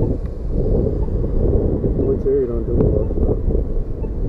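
Wind buffeting the rider's camera microphone as a steady low rumble, with street traffic passing. A voice speaks indistinctly about two to three seconds in.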